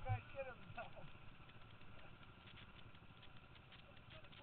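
Brief faint talking from people close by in the first second, then only low background noise with small scattered ticks.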